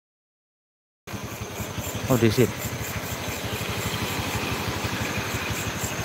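Motorcycle engine running steadily with even, rapid firing pulses; it cuts in abruptly after about a second of dead silence.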